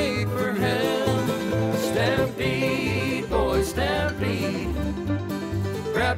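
Country-western song played by a band, with singing over plucked-string guitar and a steady bass beat.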